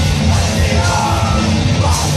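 Hardcore punk band playing live, loud: guitars, bass and drums under a shouted lead vocal.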